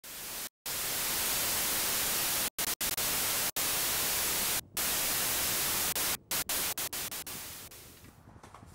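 Hiss of television-style static, broken by sudden split-second dropouts that come faster and faster near the end before the hiss fades out.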